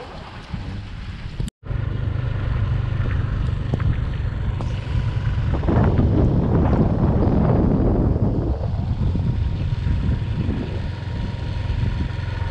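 Motorbike engine running while riding, with wind buffeting the microphone, heaviest in the middle stretch. The sound drops out completely for an instant about a second and a half in.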